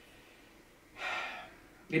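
A man's short audible breath in, about a second in, after a near-silent pause; his voice starts again right at the end.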